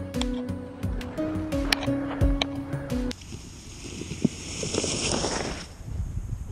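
Background music with a steady beat that cuts off abruptly about three seconds in. It is followed by a rough, hissing scrape of a sled sliding fast over snow, with one sharp click partway through, which stops shortly before the end.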